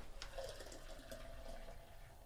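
Beer pouring from the tap of a CO2-pressurized stainless-steel portable growler dispenser, a faint steady filling sound that fades near the end.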